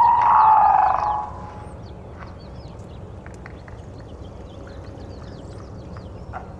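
Many short, high chirps from small birds twittering in the background, after a man's voice trails off in the first second.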